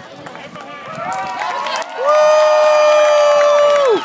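Crowd of students yelling, then one loud, high-pitched scream starting about halfway in. It is held at a steady pitch for about two seconds and cuts off just before the end.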